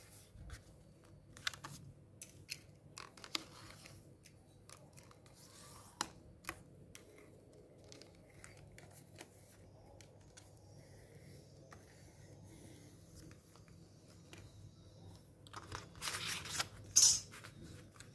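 Paper rustling with scattered light clicks and taps as a calendar sheet is creased along a steel ruler, then a louder stretch of paper rustling near the end as the sheet is handled.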